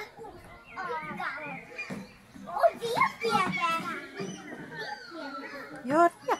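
Young children's voices chattering and calling out, with no clear words, in short bursts with a brief lull about two seconds in.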